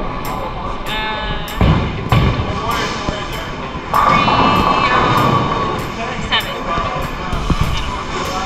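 Background pop music with a steady beat and held sung notes, over the murmur of a crowded bowling alley.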